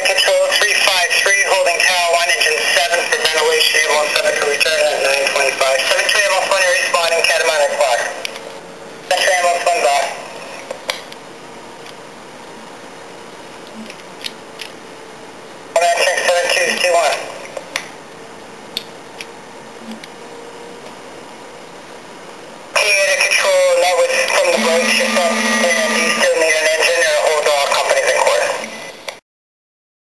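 Handheld radio scanner playing fire department radio traffic: four voice transmissions that cut in and out abruptly, the longest lasting several seconds, with a steady hiss between them.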